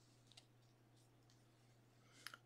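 Near silence with a few faint clicks of trading cards being handled, the clearest about a third of a second in.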